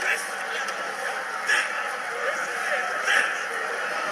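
Indistinct voices and brief shouts from a crowd over a steady hiss, with no clear words.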